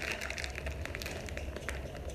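Plastic Buldak instant ramen packets crinkling as three of them are held up and shaken about: a rapid, irregular string of crackles.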